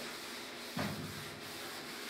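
A cloth rubbing over a chalkboard, wiping it clean, as a steady soft scrubbing hiss. A brief low bump comes a little under a second in.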